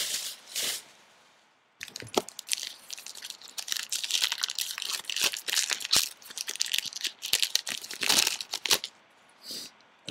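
A trading card pack's wrapper being torn open and crinkled in the hands: a couple of short crackles, a brief pause, then several seconds of dense crackling that stops shortly before the end.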